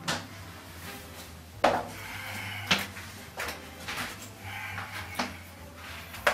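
A series of sharp knocks and clunks, about six at uneven spacing of roughly a second, over a low steady hum.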